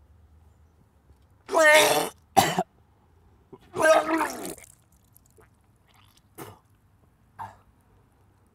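A man retching and vomiting into a ceramic bowl, with his fingers at his mouth: two loud, gagging heaves about two seconds apart, the first about one and a half seconds in, with a short sharp gasp just after the first, then two brief, softer sounds near the end.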